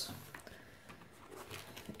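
Quiet handling noise: a few faint taps and rustles as a plastic binder is moved on a table.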